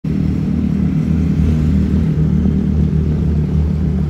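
A steady, loud, low engine rumble running evenly.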